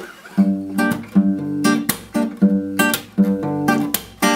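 Cutaway steel-string acoustic guitar strummed in a steady rhythm of about two to three strokes a second, starting about half a second in: the strumming pattern of the song's second verse, on held chords.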